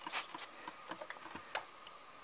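Hand mist sprayer being handled: a short spray hiss at the start, then faint scattered clicks and taps.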